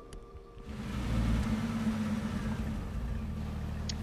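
An SUV's engine running with its tyres hissing on a wet road as it drives along. The sound starts about half a second in and holds steady, with a low hum under it.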